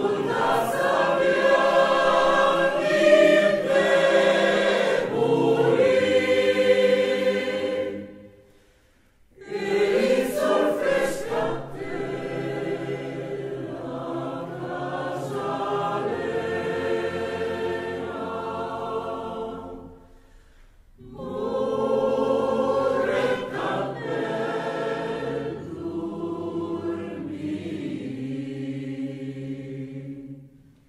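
Mixed choir singing a Romagnol folk song (canta romagnola) in three phrases, each ending in a short pause, about eight and twenty seconds in.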